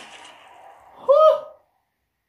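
A person's short, high-pitched vocal cry about a second in, its pitch rising then falling slightly, over faint fading background noise; it cuts off abruptly into dead silence.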